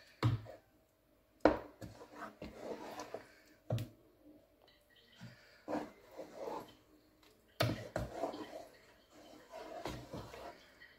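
Wooden spatula stirring thick blended tomato stew in a pot, scraping and squelching through the sauce, with about six irregular knocks as it strikes the pot's side.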